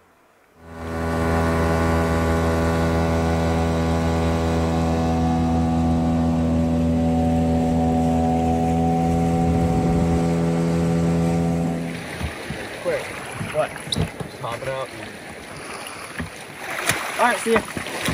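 Small outboard motor on an inflatable dinghy, running at a steady, even speed and then shutting off about twelve seconds in. After it come scattered knocks and voices.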